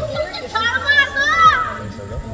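High-pitched voices calling out, with a long rising-and-falling call from about half a second to a second and a half in.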